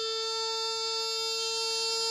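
A saenghwang (Korean mouth organ) holding one long, steady reed note, bright with overtones.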